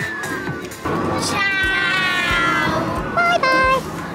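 Cartoon-style sound effects edited in over background music. A falling whistle tone ends shortly after the start. Then comes a long, high-pitched, meow-like call that slides slowly down, and near the end two short high-pitched voice notes.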